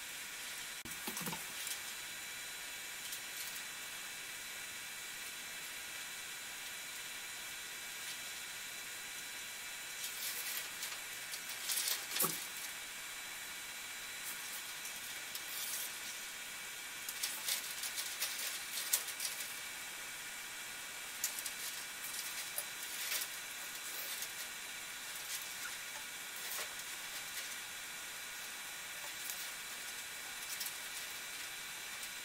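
Scattered short, soft rustles and crackles of a plastic LED light strip and its blue adhesive backing being handled, over a steady background hiss.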